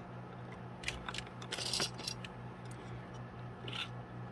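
Small metal binder clips being picked up and handled: a few light clicks about a second in, a brief scraping rustle just before two seconds and another near the end, over a steady low hum.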